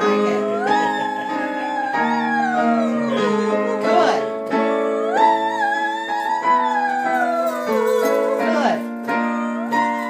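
A girl singing a vocal practice exercise over instrumental accompaniment, her voice rising and falling back in two long phrases, then a quick upward slide near the end.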